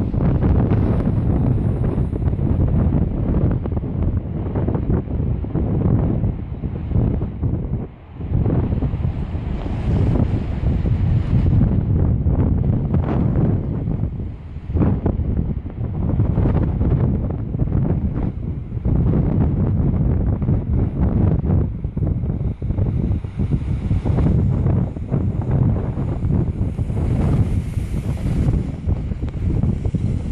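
Strong wind buffeting the microphone in gusts, a heavy low rumble that rises and falls, over the wash of storm surf breaking on the beach. The wind drops out briefly about eight seconds in.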